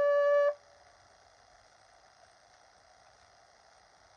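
Bugle holding one long final note that stops about half a second in.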